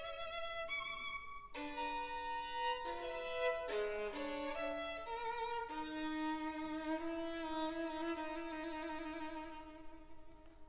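Solo violin playing unaccompanied: a run of quickly changing bowed notes, then, about halfway through, a long held note with wide vibrato that fades away near the end.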